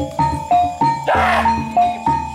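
Gamelan-style kuda kepang accompaniment: a quick repeating melody of struck metal notes over a regular low drum beat. A short hissing burst of noise comes just after a second in.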